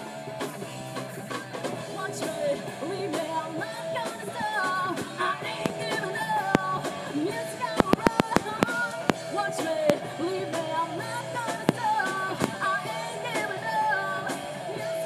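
Live rock band playing: a singer over electric guitar, bass guitar and drum kit. About eight seconds in, a quick run of sharp drum strikes, a fill.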